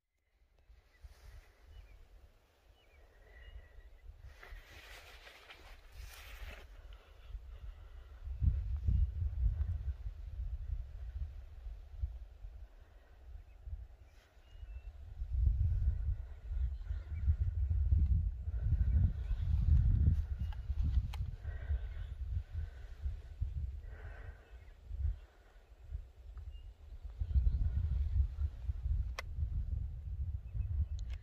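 Wind buffeting the microphone in gusts, a low rumble that swells about a third of the way in, again through the middle and near the end.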